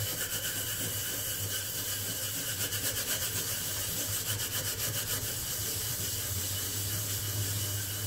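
Steady, rapid hand-scrubbing on the burnt-on black outer bottom of a frying pan, a continuous rubbing scour against the crusted surface, over a steady low hum.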